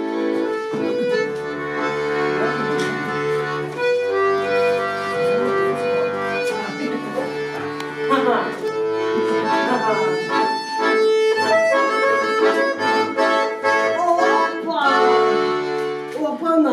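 Accordion playing a melody over held bass notes.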